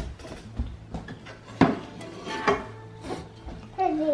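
Dinner plates clinking as a small child takes one from a stack: two sharp knocks about a second apart, the first the loudest.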